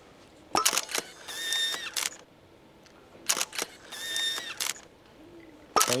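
Single-lens reflex camera firing twice. Each time there are shutter clicks, a short motorised whir and another click, and the second cycle repeats the first about three seconds later.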